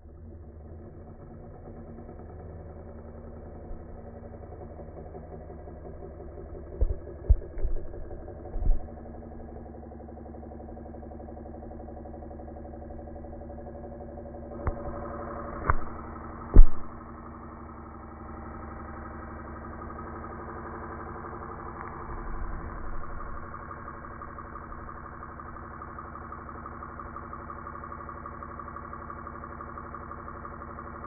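A small electric motor running steadily with a hum. Two clusters of knocks or bumps cut in, the loudest about halfway through, and a higher whine joins the hum from then on.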